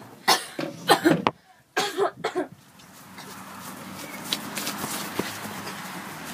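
A child making short cough-like vocal bursts, several in the first two and a half seconds, then a cut to a steady outdoor background hiss with a few faint clicks.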